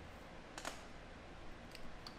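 Fingers massaging a scalp through wet hair, giving soft close clicks and crackles: a louder cluster about half a second in and a fainter one near the end.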